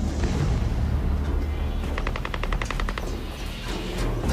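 Rapid automatic gunfire in the distance: a burst of about a second, around ten shots a second, midway through, over a steady low rumble.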